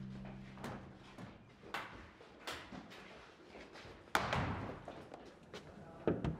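A barred metal cell gate being handled: a few scattered knocks, then a loud slam about four seconds in that rings on briefly. A low steady drone fades out about a second in.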